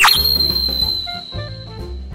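An editing transition effect, a quick swoosh followed by a high bright ringing tone that fades over about two seconds, over light jazzy background music with short melodic notes and a beat.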